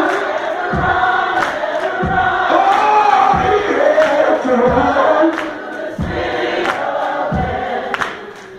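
Gospel group singing in a church, joined by congregation voices, over a regular beat that falls about once every second and a half.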